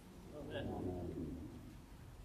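Speech only: a single drawn-out spoken "Amen", lasting about a second.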